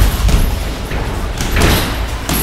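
Thuds and knocks from two boxers in light-contact sparring: feet landing on the ring floor and gloves meeting. There is a loud thud at the very start and a rougher scuffing sound about a second and a half in.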